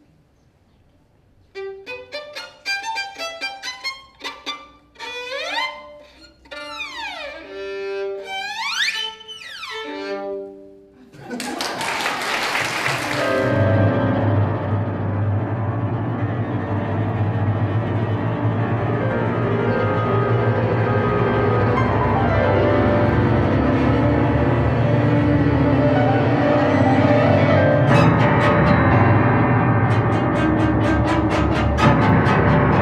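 A string quintet playing contemporary classical music. After a second or so of quiet come short separate notes and sliding pitches, then a sudden bright swell about eleven seconds in leads into a full sustained passage that grows steadily louder.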